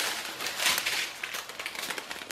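Strip of small plastic zip bags of diamond-painting drills crinkling and rustling as it is handled.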